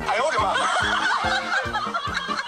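Background music with a steady, quick beat, about four beats a second, and a high, giggling, laugh-like voice over it.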